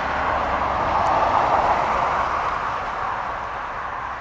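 A passing road vehicle: a steady rush of tyre and road noise that swells to a peak about a second and a half in, then slowly fades away.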